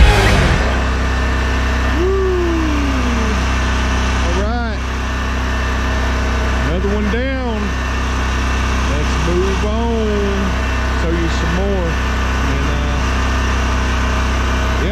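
Engine of a red Toro commercial lawn mower running steadily at an even pitch. Over it, a voice-like sound rises and falls in pitch several times.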